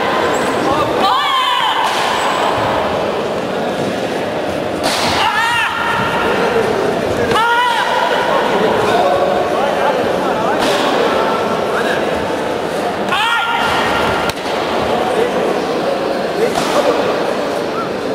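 Taekwondo sparring in a hall full of voices: several short shouts and the sharp slaps and thuds of kicks landing on body protectors, over steady background chatter that echoes in the hall.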